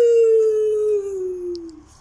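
A boy's loud celebratory shout, one long held note whose pitch slides slowly downward for nearly two seconds before it stops.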